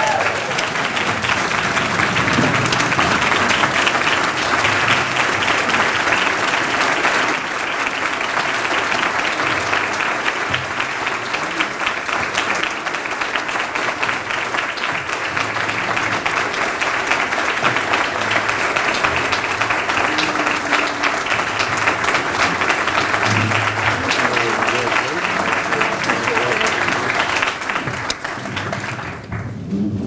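Large audience applauding, a long, dense ovation that dies away near the end.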